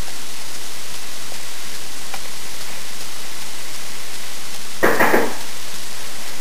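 Loud, steady hiss of a low-quality camera's recording noise, with a brief rustling bump about five seconds in.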